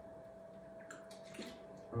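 Faint sounds of water being drunk from a plastic water bottle, with a few soft sloshes and swallows in the middle.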